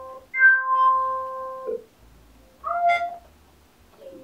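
Nord Lead synthesizer playing a held note for about a second and a half, then a short note that bends in pitch near three seconds in, as its sound is being shaped at the panel.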